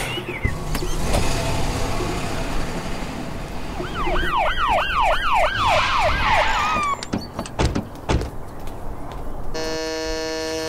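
Police car siren yelping, a fast rising-and-falling wail of about three sweeps a second, for about three seconds from about four seconds in, after a few seconds of vehicle noise. A few knocks follow, and a steady buzzing tone starts near the end.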